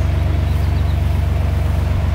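Narrowboat diesel engine running steadily in forward gear, a low, even throb.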